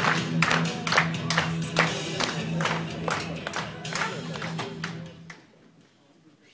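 Hands clapping in a steady rhythm, about two claps a second, over a steady low droning tone. It dies away about five seconds in.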